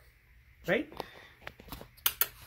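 Quiet room tone with one short spoken word about a third of the way in, followed by a few faint clicks.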